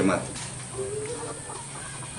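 A chicken clucking faintly about a second in, a short call over quiet yard background.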